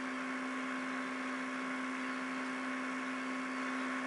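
Steady hum with a faint even hiss under it: the background noise of the recording while nobody speaks.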